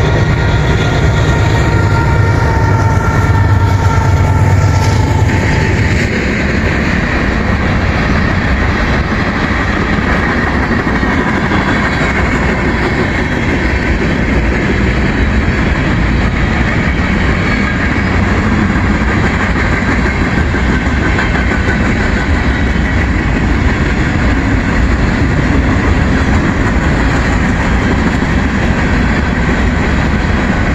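Freight train passing close by. A deep rumble with a few steady high tones for the first five or six seconds gives way to the continuous rolling noise and clatter of tank cars and covered hopper cars going over the rails.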